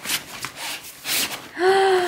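A folder being pushed into the packed side compartment of a fabric Bio Sculpture kit bag: rustling and scraping of the folder against the bag's fabric. Near the end, a short held vocal exclamation from a woman.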